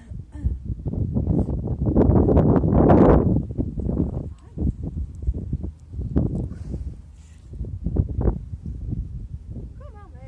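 A horse breathing out in a long, rasping blow that swells to its loudest about three seconds in, followed by several shorter breath noises.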